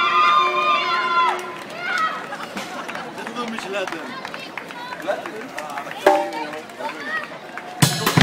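Spectators calling out with long held shouts and chattering as marathon runners pass, with the patter of running feet. Near the end a drum kit comes in suddenly and loudly with bass drum and snare.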